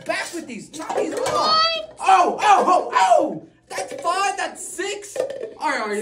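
Excited voices shouting and calling out over one another, loudest a couple of seconds in.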